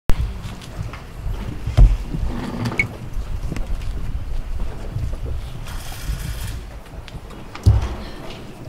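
Wind buffeting an open microphone: a steady low rumble with heavier thumps right at the start, about two seconds in and again near the end.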